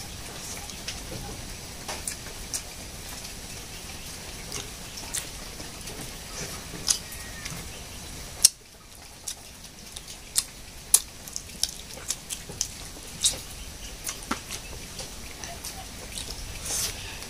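A person eating with their hands and chewing, heard as irregular wet smacking clicks over a steady background hiss, with one sharp click standing out about halfway through.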